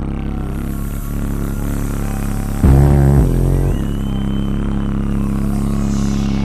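Live vocal-only electronic groove played through a concert PA: deep, droning bass held under a steady pulse, made by a group of singers and beatboxers at microphones. A louder, fuller swell comes in about three seconds in.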